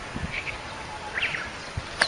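Outdoor background hiss with a few short, high chirps, about half a second and a second in.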